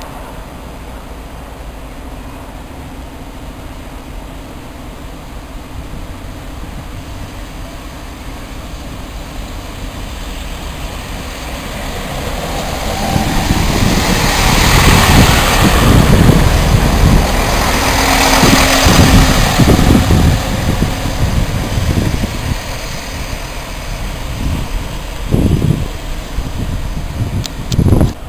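A First Great Western diesel multiple unit approaches and passes close by on the track beside the platform. Its rumble swells to a peak in the middle, with a rapid run of low knocks from the wheels, then eases off. Two sharp thumps come near the end.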